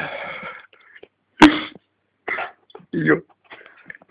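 A single sharp cough about a second and a half in, between hushed, whispery voices and short murmured words.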